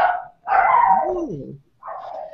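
A dog barking and yelping over the video-call audio: a short bark, then a longer call of about a second that rises and falls in pitch, then another short bark near the end.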